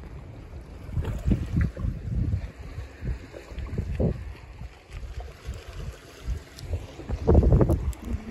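Wind buffeting a phone microphone: an uneven low rumble that swells in gusts about a second in, again near the middle and strongest near the end.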